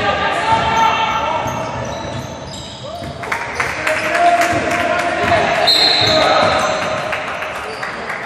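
Basketball game play in a large, echoing gym: the ball dribbling on the hardwood floor, with short high squeaks of shoes and players calling out.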